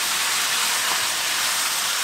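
Chicken and vegetables sizzling steadily in a hot pan while being stir-fried with a wooden spatula.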